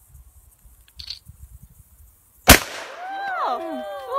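A single loud gunshot from a shoulder-fired long gun about two and a half seconds in, ringing briefly. Voices cry out right after it, sliding up and down in pitch.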